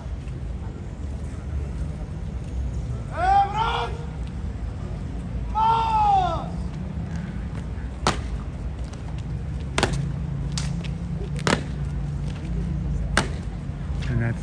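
Two drawn-out shouted commands, each rising then falling in pitch. Then five sharp, unevenly spaced clacks from the Evzone guards' drill, over a steady murmur of the crowd.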